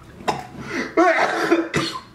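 A man's hard laughing fit breaking into cough-like bursts. It is loudest from about a second in until just before the end.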